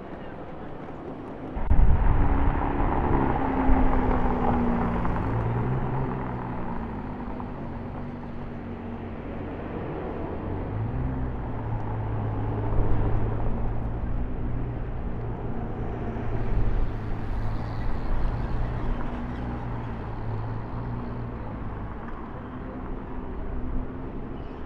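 Ferrari 296 GTB's engine comes in suddenly and loud about two seconds in, its revs falling back over the next couple of seconds, then runs at a steady low idle.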